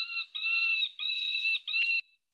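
Wildlife audio lure playing a screaming call made to sound like a deer in distress: a quick string of short, high-pitched screams, about two a second.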